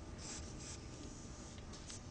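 Pencil sketching on paper: a few faint, short scratchy strokes, two in the first second and two quick ones near the end.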